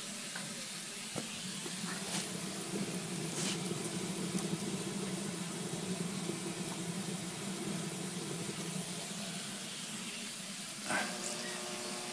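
Steady hiss of steam escaping from a homemade mono-tube steam boiler under pressure, with a low steady hum underneath.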